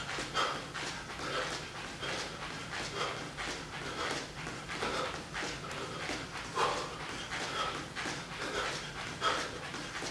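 A man panting hard from exertion while dancing, a soft puff of breath about once a second.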